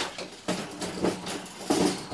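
Wire-and-metal Critter Nation cage unit rattling and clanking while it is lifted and handled, with about four separate knocks.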